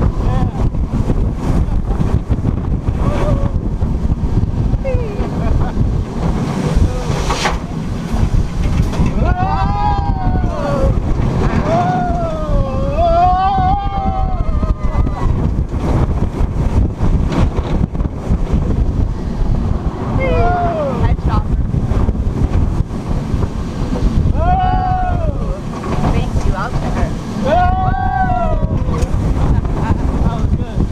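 Wind roaring over the camera microphone as riders go through the hills of a B&M hyper roller coaster. Riders yell and whoop over it several times, in clusters around a third of the way in, two-thirds of the way in and near the end.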